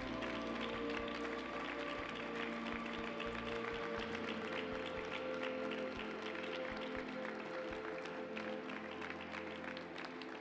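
Ceremony music over an arena's public-address speakers, with an audience clapping throughout; the clapping thins a little near the end.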